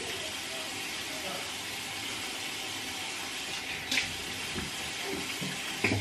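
A steady, even hiss with one light click about four seconds in.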